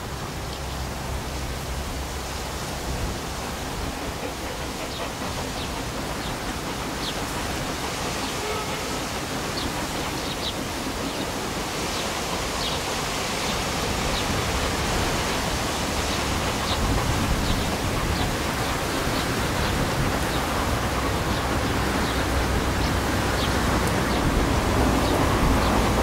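Saddle tank steam locomotive hauling a goods train and approaching. Its steady exhaust and running noise grows gradually louder, with no distinct beat.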